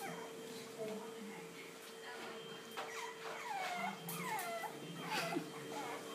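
French Bulldog puppy whimpering: a run of short, high whines, each falling in pitch, starting about three seconds in.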